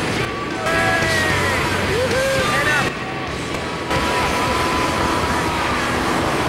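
A song with a singing voice playing in the background, over a steady rush of air noise.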